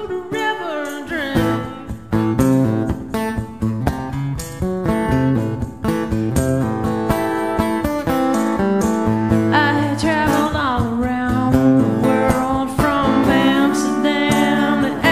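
Steel-string acoustic guitar strummed steadily, with a woman singing over it in places.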